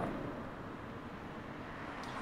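Steady low background hum of street traffic heard from inside a car, even throughout with no distinct events.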